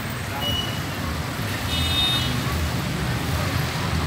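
Road traffic at a busy junction: cars and motorcycles running steadily. A short, high horn beep sounds about two seconds in.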